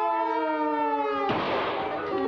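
Cartoon orchestral score: a held brass chord sliding slowly down in pitch, cut off about a second and a half in by a sudden crash sound effect that lasts about half a second.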